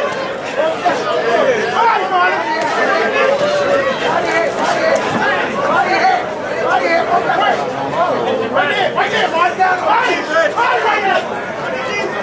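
Many voices talking and shouting over one another without a break: spectators at ringside.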